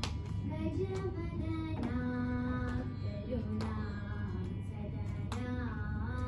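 A girl singing a Carnatic song solo, holding long notes that bend and slide in pitch, with a hand tap marking the beat about once a second.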